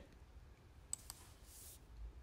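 Near silence with two faint clicks about a second in, from the computer being clicked to advance the presentation slide.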